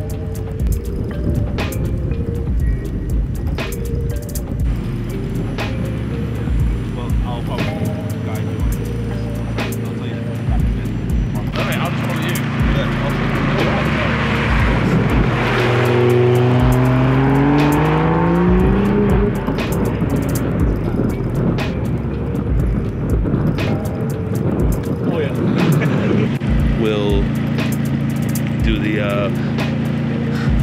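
Background music with a steady beat. In the middle, a car's engine rises in pitch as it accelerates.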